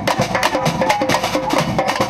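Street percussion group playing snare drums and large bass drums (caixas and surdos) in a fast, steady beat, with a tune carried above the drums.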